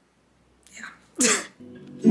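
A woman's short, sharp burst of breath through the nose and mouth, with a softer breath just before it, about a second in. Music starts softly near the end.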